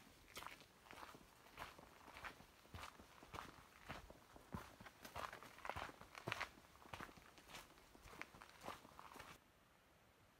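Faint footsteps of a hiker on a dirt and leaf-litter forest trail, a steady walking pace of a little under two steps a second, cutting off abruptly near the end.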